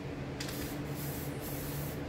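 Aerosol spray-paint can hissing as paint is sprayed onto the board, a steady hiss that starts about half a second in.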